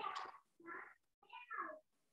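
A cat meowing three times in quick succession, faintly, the last meow falling in pitch.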